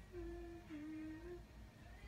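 A woman humming softly with her mouth closed: two held notes, the second a little lower, like a thoughtful 'mm-hmm'.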